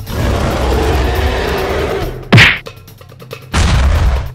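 Dubbed fight sound effects: a rushing noise lasting about two seconds, then a single loud whack, the loudest moment, and another burst of noise starting near the end.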